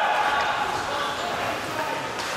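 Ice hockey rink sound during play: distant voices calling out across the ice over a steady hall hubbub, with a couple of sharp knocks near the end from sticks or puck.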